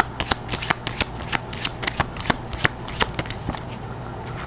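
Tarot cards being shuffled by hand: an irregular run of crisp card snaps and riffles, about three or four a second.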